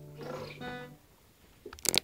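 Strummed acoustic guitar chord ringing out and then damped about a second in, with a short scraping rustle of the hand on the strings. Near the end come several loud sharp clunks of the camera being handled.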